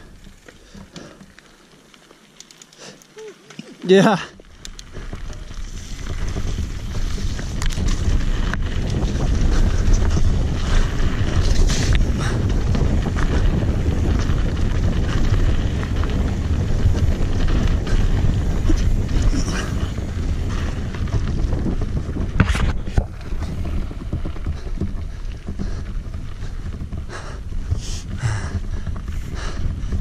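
Wind rushing over an action camera's microphone, mixed with tyres rolling on dirt, as a full-suspension mountain bike descends singletrack. It builds up about five seconds in and stays loud, with scattered clicks and knocks from the bike over bumps.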